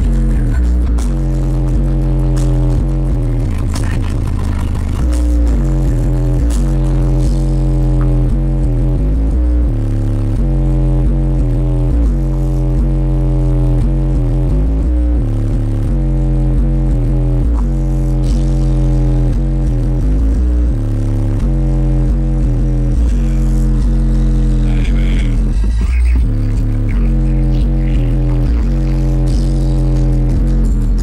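Bass-heavy music played very loud through a truck's competition car-audio subwoofers (18-inch and 12-inch woofers in ported boxes), heard inside the cab. Deep sustained bass notes step up and down in pitch one after another, with short breaks between steps.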